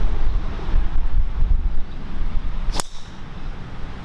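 A driver striking a teed golf ball: one sharp, short crack about three-quarters of the way in, the shot struck out of the middle of the clubface. Wind rumbles on the microphone before it.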